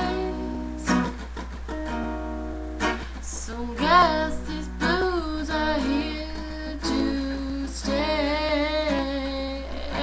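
A woman singing a slow blues line over her own strummed acoustic guitar, with strums about every one to two seconds and held sung notes that waver with vibrato near the end.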